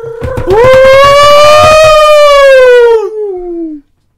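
A single long, very loud wailing cry on one pitch that swoops up at the start, holds for about three seconds while rising slightly, then slides down and cuts off.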